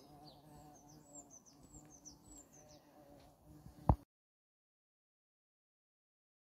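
A bee buzzing steadily among potted flowering plants, with small birds chirping in short falling notes. About four seconds in, a sharp click cuts the sound off.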